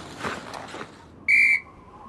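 A single short, steady blast of a coach's sports whistle, about a second and a half in.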